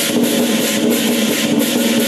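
Lion dance percussion: a big drum with crash cymbals and a gong, played in a steady driving beat. The cymbals clash about three times a second over the gong's ringing tone.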